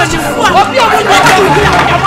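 Several voices talking and shouting over one another in a commotion.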